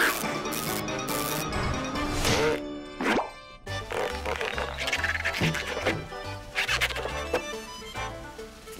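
Cartoon background music with slapstick sound effects over it: a sharp hit at the start, then a run of short comic effects as a character is stretched and twisted like a balloon animal.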